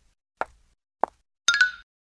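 Cartoon sound effects: two short pops about half a second apart, then a brief ringing sparkle near the end.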